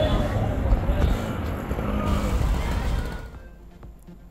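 Street noise of a town bus running through a bus stand, a dense low rumble with faint voices mixed in, fading out about three seconds in.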